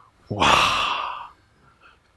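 A man's drawn-out, breathy exclamation "wah" (Korean 와), close to a sigh, lasting about a second and trailing off. It voices amazement.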